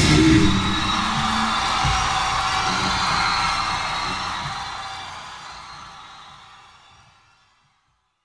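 End of a live hard rock song: the band's last hit, then a ringing wash with crowd cheering that fades out to silence about seven seconds in.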